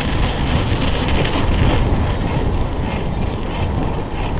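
Wind buffeting the microphone and tyre rumble from a mountain bike riding fast on a sandy dirt track: a loud, steady rushing noise.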